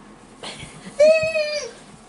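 A toddler's high-pitched, drawn-out vocal call about halfway through, sliding down in pitch as it ends.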